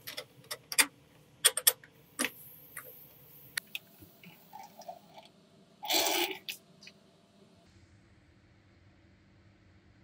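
Steel parts of a homemade scissor jack clinking and knocking against each other and the steel workbench as they are handled and fitted: a quick run of sharp metal clicks in the first two or three seconds, then a louder, half-second scraping sound about six seconds in.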